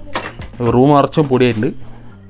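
A man talking in Malayalam, in short phrases.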